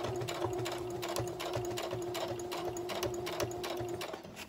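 Electric home sewing machine stitching steadily: a steady motor hum under a quick, even clatter of the needle.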